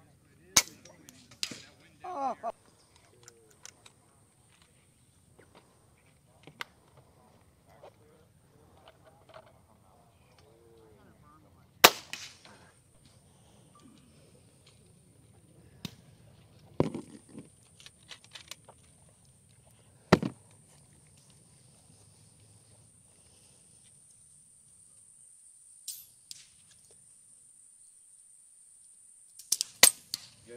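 Air rifle shots: about half a dozen sharp single cracks spaced several seconds apart, the loudest about twelve seconds in.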